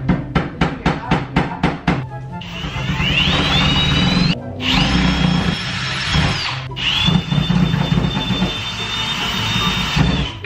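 Cordless drill driving a screw to fasten a loose shelf to the wall. Its motor starts about two and a half seconds in with a whine that rises in pitch, stops briefly twice, and runs on at a steady pitch each time. Background music with a steady beat plays underneath.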